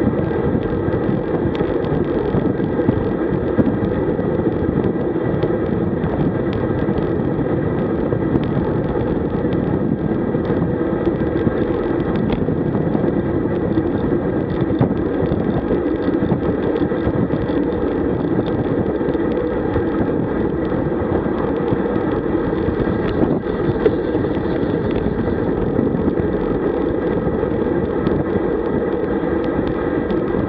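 Steady rush of wind and road noise on a bicycle-mounted camera's microphone, riding at about 40 km/h.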